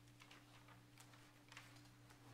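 Near silence: room tone with a steady low hum and a few faint, brief clicks.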